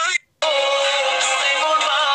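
Background music with a melody, cut off by a short silent gap just after the start, then running on steadily.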